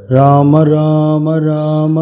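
A man chanting the name "Rama" in long, drawn-out sung notes, starting abruptly just after a brief hush.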